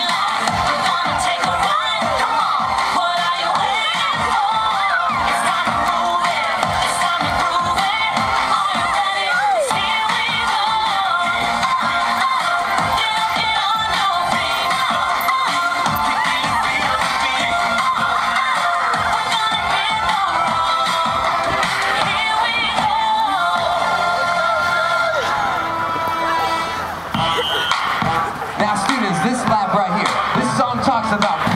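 Music playing, mixed with the shouting and cheering of a crowd of children and spectators at a school fun run.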